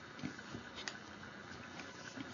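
Hands twining yarn over warp strands: a faint rustle of yarn with a few soft, faint ticks.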